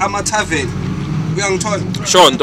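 A bus engine running as a steady low hum inside the cabin, under a man's voice.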